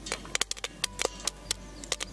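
Popcorn kernels popping in a hot metal pan: irregular sharp pops, several a second, over faint background music.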